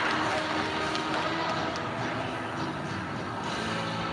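Steady crowd din in a large gymnasium, with music playing in the background.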